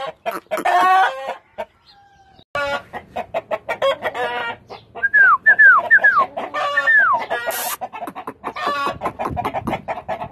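Indian-breed roosters and chickens calling. A short burst of pitched rooster calls near the start, then after a brief gap a dense run of clucking, with several high falling notes in the middle.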